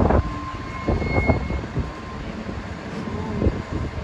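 Steady low engine rumble on a car ferry's vehicle deck, with faint voices in the background and a short thin tone about a second in.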